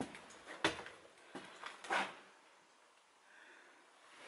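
A few sharp knocks and scuffs from someone moving through a debris-strewn room, the two loudest about half a second and two seconds in.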